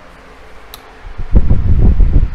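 Quiet room tone with one faint click a little before the first second, then a loud low rumble from about 1.3 seconds on, like wind or rubbing on the microphone.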